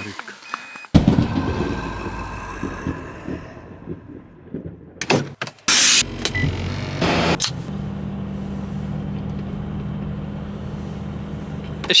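Car engine starting with a sudden loud burst about a second in, revved briefly a couple of times around the middle, then settling into a steady idle.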